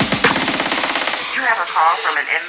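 Electronic breakbeat dance music: a fast drum roll of evenly spaced hits whose bass thins out, with the high end cutting off about a second in, followed by chopped, swooping vocal-sample fragments near the end.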